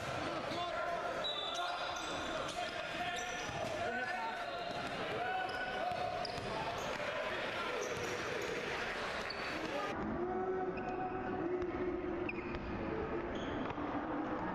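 Live sound of a basketball game in a gym: the ball dribbling on the court, short high sneaker squeaks, and indistinct players' shouts, all echoing in the hall. The sound goes duller after a cut about ten seconds in.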